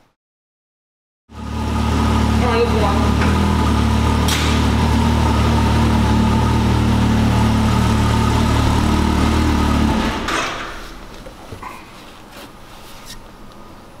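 Can-Am Maverick X3's turbocharged three-cylinder engine idling steadily, just started and warming up. About ten seconds in, the sound drops sharply to a faint background level.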